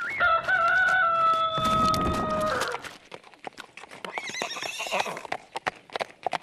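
Rooster crowing as a cartoon sound effect, one long held crow of about two and a half seconds, marking daybreak. From about three seconds in comes a short horse whinny with scattered hoof clip-clops.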